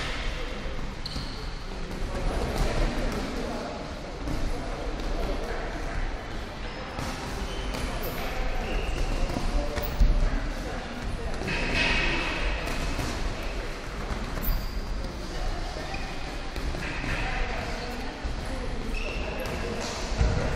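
Boxing sparring: a running patter of thuds from feet moving on the ring canvas and gloves landing on gloves, headguards and bodies, in a large echoing hall.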